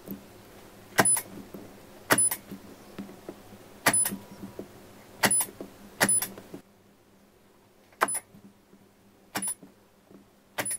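K-Weld battery spot welder firing through handheld copper probes, welding pure nickel strip onto lithium-ion cells: seven sharp snapping welds spaced a second or two apart, each a quick double snap.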